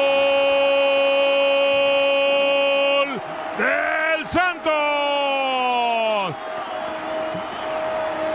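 Spanish-language football commentator's long drawn-out goal cry, a 'gooool' held on one steady pitch that breaks off about three seconds in. It is followed by a few more shouted, swooping exclamations.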